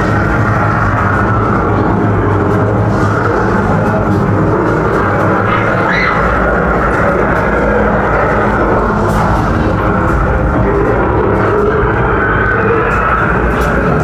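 Loud haunted-maze soundtrack playing steadily: dark background music with a continuous low drone.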